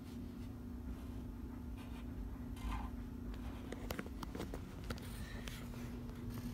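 Marker pen scratching across a wall in short strokes, with a few light taps in the second half.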